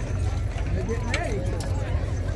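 Clydesdale draft horses' hooves clip-clopping on asphalt as the hitch walks past, mixed with the chatter of onlookers' voices.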